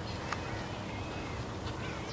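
Low, steady open-air background noise, with a faint click about a third of a second in and a few faint high chirps near the end.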